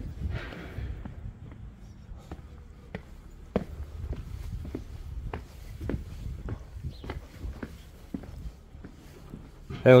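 Footsteps on concrete paving at an even walking pace, about two steps a second, over a low steady rumble on the microphone.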